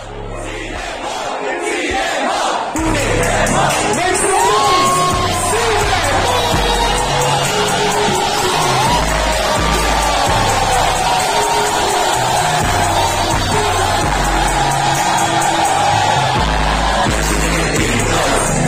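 Loud live hip-hop music from a DJ over a club PA system, with a heavy pulsing bass that comes in about three seconds in, and a crowd cheering and shouting along.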